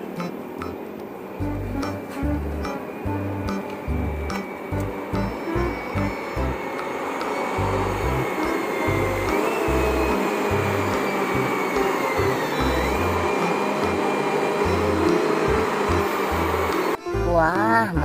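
Background music with a steady beat over the continuous drone of a Komatsu mining haul truck on the move, with a high whine that jumps up and slowly falls in pitch around the middle.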